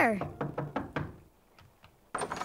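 Knocking on a wooden door: a quick run of about five raps, then two fainter ones near the end.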